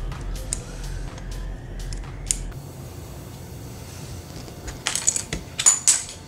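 Hard plastic LEGO pieces clicking as they are handled and pressed together, then a quick run of louder clatters near the end as pieces strike the table.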